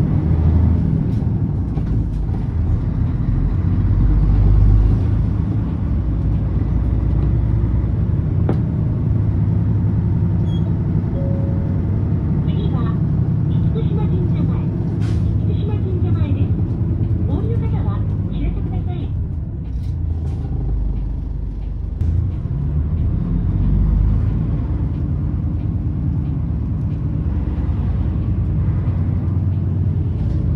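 City bus running along a street, heard from inside the cabin: a steady low engine and road rumble that swells and eases slightly with speed.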